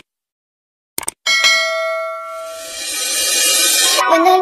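Sound effects of a subscribe-button animation: a couple of short mouse clicks about a second in, then a notification-bell ding that rings on and slowly fades. A rising whoosh builds near the end.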